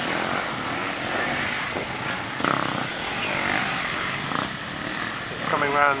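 Distant enduro motorcycle engines droning steadily as bikes ride around the dirt course, with a faint rise and fall in revs partway through.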